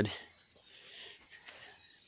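Quiet outdoor background with faint birdsong, just after a man's voice trails off at the start.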